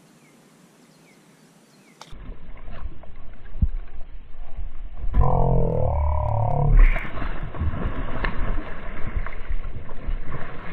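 A hooked largemouth bass splashing and thrashing at the surface as it is reeled in close to the bank, with dense clicking and rumbling handling noise that starts abruptly about two seconds in after faint hiss. Through the middle, a loud, wavering drawn-out tone lasts about two seconds.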